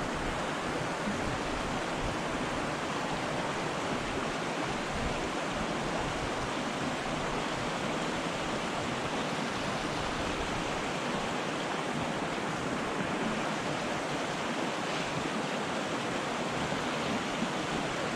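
Mountain river water flowing over rocks into a pool: a steady rush of water.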